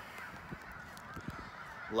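A flock of geese honking faintly, a continuous chorus of calls.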